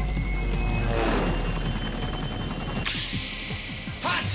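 Cartoon soundtrack music with a steady low drone and electronic sound effects: a falling swoop about a second in, and a hiss that comes in near the end.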